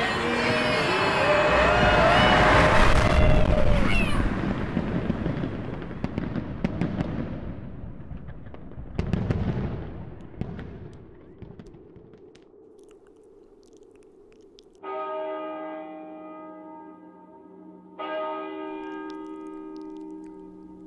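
A crowd cheering and whooping with fireworks crackling, loud at first and fading away over several seconds, with a second short burst about nine seconds in. Then a large bell strikes twice, about three seconds apart, each stroke ringing on with a steady chord of tones.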